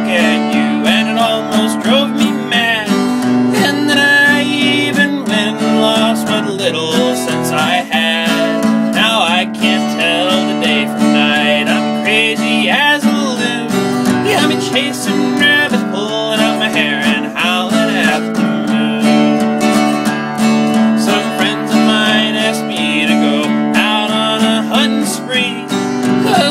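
Instrumental break in a country song: acoustic guitar strumming under a melodic lead whose notes slide and waver.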